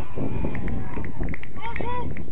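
Footballers shouting to each other across the pitch, with short calls near the end, over a steady low rumble of wind on the microphone.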